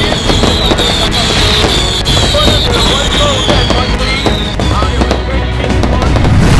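Fireworks and firecrackers crackling and popping in rapid, dense bursts over background music, with a high whistle slowly falling in pitch through most of it.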